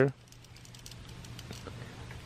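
Faint small clicks and rustling of plastic wiring-harness connectors and wires being handled, over a low steady hum.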